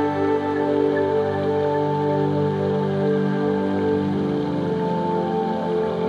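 Soft new-age background music with sustained synthesizer pad chords; the chord changes about two-thirds of the way through.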